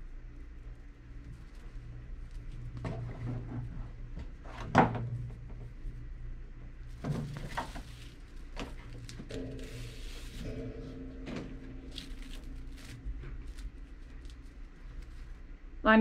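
Hands threading a bungee line through rope bridle loops: soft rubbing and rustling of cord over a towel, with a few light knocks, the sharpest about five seconds in.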